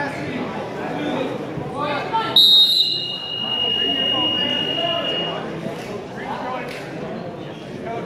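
A wrestling scoreboard clock's buzzer sounds about two seconds in as the clock hits zero, ending the period: one high, steady tone lasting about three seconds. Spectators are shouting throughout in a large gym.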